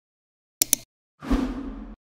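Logo-animation sound effect: two quick sharp clicks, then a whoosh with a low thump that cuts off suddenly near the end.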